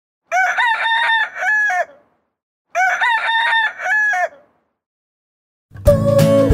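A rooster crowing twice, each crow about one and a half seconds long in several syllables, with a silent gap between them. Music begins just before the end.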